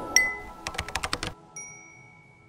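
Logo sting sound design: a bright chime, then a quick run of about a dozen crisp clicks like keystrokes, then a single clear ding that rings on and fades.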